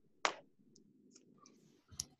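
A single sharp click about a quarter second in, then faint low background noise with a few small ticks, and another brief click near the end.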